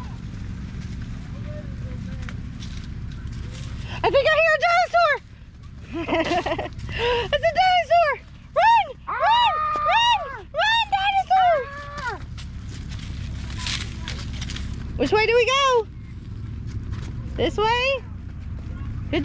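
A toddler babbling in high-pitched bursts of wordless, rising-and-falling vocal sounds: a run of them about four seconds in, a longer string in the middle, and short bursts near the end.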